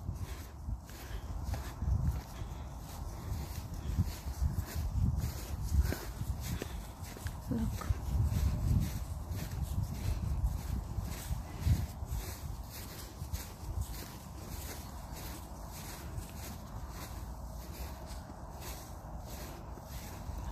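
Footsteps on frost-covered grass at a steady walking pace, about two steps a second, over an uneven low rumble on the microphone.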